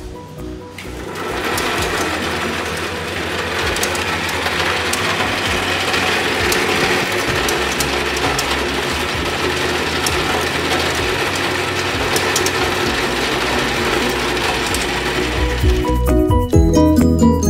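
Motor-driven cashew grading machine running, with cashew kernels rattling and clicking steadily over its metal bed as they are sorted by size. It comes in about a second in, after a brief stretch of music.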